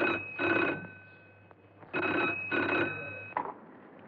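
Desk telephone bell ringing in the double-ring pattern: ring-ring, a pause of about a second, ring-ring. The second pair fades out and a short click follows as the receiver is picked up.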